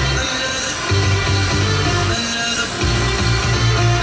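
Music from a radio broadcast, with a bass line that changes note about every second.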